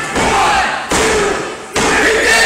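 Crowd yelling along with a referee's pinfall count, with two sharp slaps of the referee's hand on the wrestling ring mat about a second apart.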